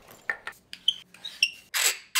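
Handling sounds as a shotgun microphone is taken out of its soft padded pouch: a few small clicks and two light metallic clinks, then a brief rustling swish near the end as it slides out.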